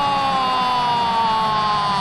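A football commentator's long drawn-out "gol" call, one held shout sliding slowly down in pitch, over the stadium crowd's steady noise.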